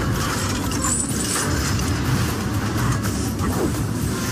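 Action-film soundtrack: a loud, dense rumble of tank sound effects mixed with music.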